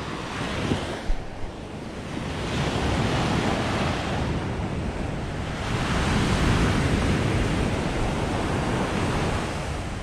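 Rough sea surf breaking and washing up a sandy beach, swelling louder twice as waves roll in, about two and a half and six seconds in.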